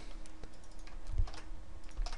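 A few scattered keystrokes on a computer keyboard, with a soft low thump a little over a second in.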